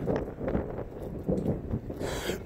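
Wind buffeting a handheld phone's microphone as it is carried while walking, with irregular low rumbling thumps from the walking and handling.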